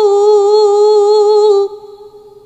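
A Qur'an reciter's voice holding one long, steady melodic note in tilawah recitation, ending near the end and leaving a faint fading echo.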